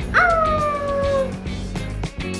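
A Samoyed gives one drawn-out 'awoo' howl that jumps up and then slowly falls in pitch over about a second, over background music.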